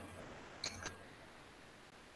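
Near silence on an online video call, with two faint short clicks just under a second in.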